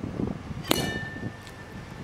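A battle axe strikes the neck of a champagne bottle and cleanly cuts off its top: one sharp clang about two-thirds of a second in, followed by a clear ringing tone that fades away over about a second.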